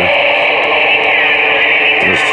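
Steady, loud hiss of CB radio receiver static coming from a President Bill FCC through its speaker, thin and confined to a narrow mid-high band, with faint wavering tones in it.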